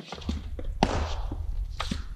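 Training flails knocking together as two fencers exchange strikes and blocks, with shuffling footsteps on a sports-hall floor. There are a few sharp knocks, the loudest just under a second in and near the end, over a steady low rumble.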